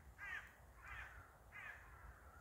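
A bird cawing faintly three times, about evenly spaced, with harsh, crow-like calls.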